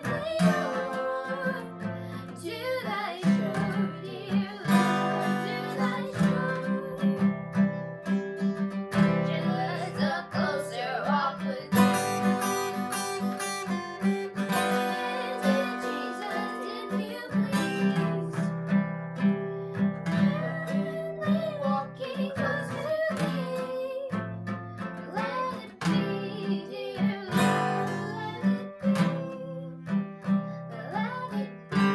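Acoustic guitar strummed steadily while a girl sings a slow song.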